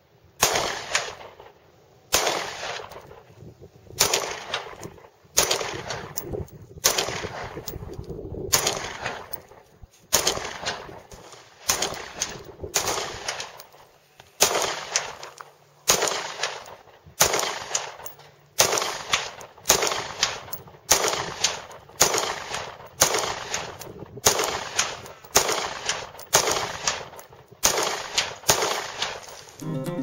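A Daewoo DP51 9mm pistol fired in a steady string of about two dozen shots, roughly one a second, each shot trailing off in echo.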